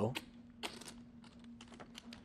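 Light, irregular clicking of clay poker chips being handled at the table, over a faint steady hum.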